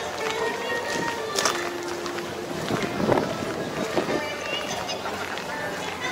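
Background voices and music, with a few short knocks.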